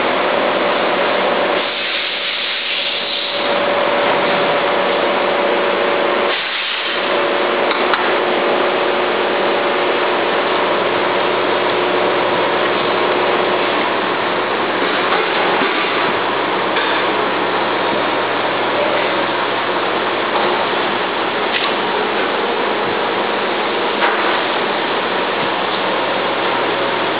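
Steady machinery noise: an even hiss with a faint hum of steady tones underneath, briefly dropping twice near the start.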